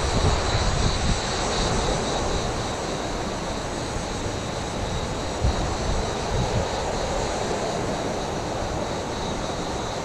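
Steady rushing of a fast-flowing stream, an even noise with no breaks.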